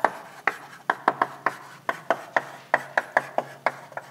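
Chalk writing on a blackboard: a quick, irregular run of sharp taps and short scrapes as the letters are formed, about four a second, over a faint low steady hum.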